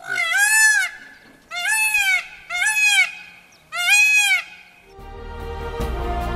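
Indian peafowl calling four times in quick succession. Each call is a loud, rising-and-falling wail lasting under a second.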